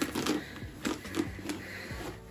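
A handbag's gold-tone metal chain strap clinking in a few separate clicks, with cloth rustling as the bag is drawn out of its fabric dust bag.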